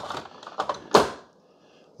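A single sharp click about a second in, from a hand working the controls of a Keurig K-Café coffee maker.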